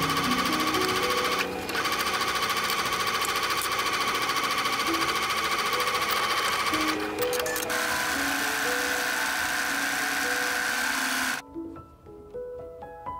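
Bernette B37 computerized sewing machine stitching a seam at steady speed, with a short break about a second and a half in and another around seven seconds, then stopping shortly before the end. Soft background music plays underneath.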